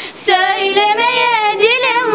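A young girl singing unaccompanied, holding long, wavering notes. She takes a quick breath just at the start.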